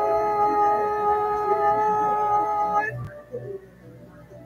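A singer holding one long, steady high vowel note, which breaks off about three seconds in.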